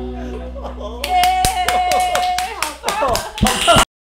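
The backing music dies away, then a few people clap about four times a second, mixed with laughing and a held vocal cheer. The sound cuts off abruptly near the end.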